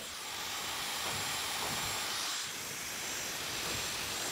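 Handheld hair dryer blowing steadily while drying hair: a rushing hiss of air with a faint high whine from its motor.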